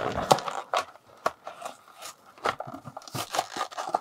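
A cardboard-and-plastic blister toy package being torn open by hand: irregular tearing, crinkling and sharp snaps of card and plastic.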